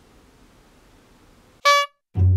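Faint background until, about one and a half seconds in, a single short, loud horn-like honk sound effect sounds over the "BLOOPERS!" title card and cuts off abruptly.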